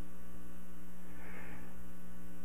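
Steady electrical mains hum at an unchanging level.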